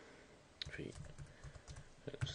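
Computer keyboard typing: a run of faint, irregular keystrokes starting about half a second in.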